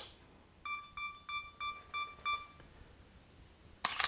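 Sony camera's self-timer beeping: a run of short, evenly spaced high beeps, about three a second for two seconds. Then the shutter clicks once near the end, taking a single frame.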